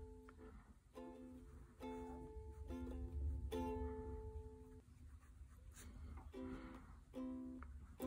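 Soft background music of plucked string notes, picked one or two at a time with short pauses between them.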